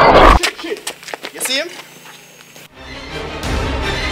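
Horror film soundtrack: a loud noisy hit at the start, a short rising, wailing cry about a second and a half in, then tense score music starting just before the end.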